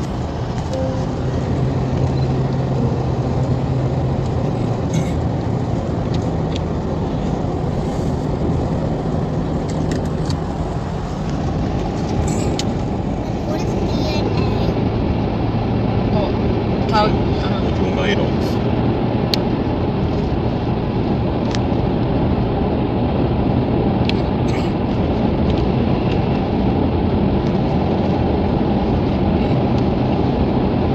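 Steady road noise inside a moving car: the engine and the tyres on a wet road, with scattered faint ticks.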